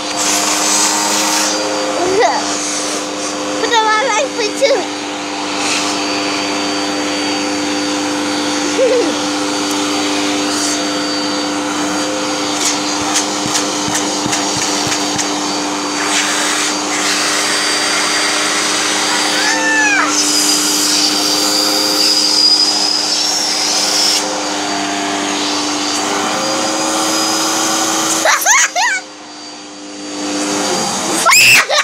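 Vacuum cleaner motor running with a steady hum, switched off about a second and a half before the end. Short vocal sounds rise and fall over it a few times.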